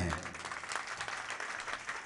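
Audience applauding, many hands clapping steadily.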